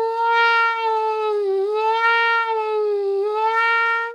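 A trumpet with a rubber plunger mute holds one long note. Its pitch sags slightly twice as the plunger is worked at the bell, showing the shift in intonation that the closed plunger causes.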